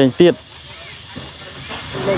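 A man's voice speaks a couple of short syllables at the start, then a steady, even hiss fills the rest of the pause.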